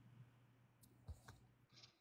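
Near silence with a faint low hum and a few faint clicks about a second in.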